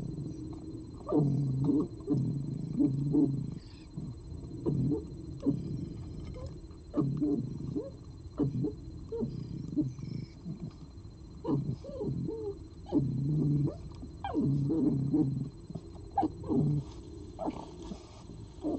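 Red fox eating from a plate right by the microphone: irregular, uneven chewing with sharp clicks and crunches, in repeated bouts.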